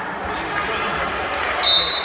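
A referee's whistle, one short shrill blast near the end, over the murmur of voices in the gym.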